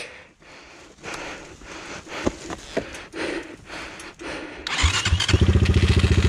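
Knocks and rustling as a 250 cc enduro motorcycle is handled in snow, then near the end its engine starts, catching and settling into a steady, fast, even running beat.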